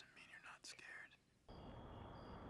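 Soft whispering voice, then, about one and a half seconds in, a steady night-time outdoor hiss begins, with a thin high insect chirp repeating over it.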